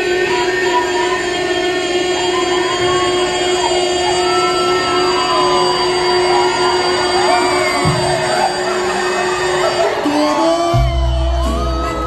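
Norteño band playing live to a large indoor crowd, heard from among the audience: one long held chord with the crowd's shouts and whoops rising and falling over it, then the bass and drums kick in near the end.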